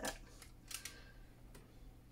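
Brief, faint scratching from a diamond-painting drill pen picking a stray piece of debris off the canvas, about three quarters of a second in.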